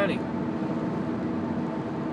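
Steady hum of a car's engine and road noise, heard from inside the cabin.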